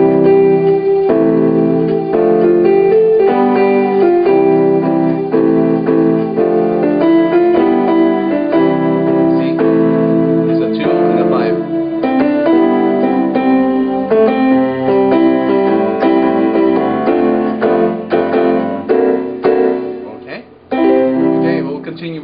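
Piano-voiced keyboard playing block chords of a one-six-two-five (I–vi–ii–V) progression, the chords changing every second or two, with a short break shortly before the end.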